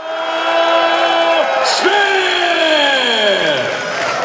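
A ring announcer's long, drawn-out call: one note held for about a second and a half, then a second call that slides steadily down in pitch, over a cheering arena crowd.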